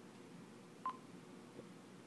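A single short electronic beep, about a second in, over a faint steady hiss, followed by a faint click.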